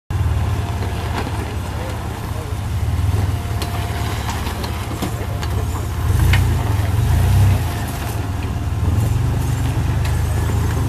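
Lifted Toyota pickup rock crawler's engine running low and steady as the truck crawls over rock at walking pace, swelling as the throttle comes up about six seconds in, then settling back. Small knocks and clicks of the tires working over stones.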